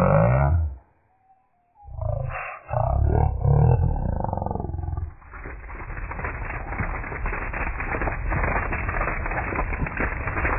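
Cartoon dialogue slowed down into deep, drawn-out, distorted voices, with a short break of silence about a second in. From about five seconds in the stretched audio turns into a dense, crackling rumble.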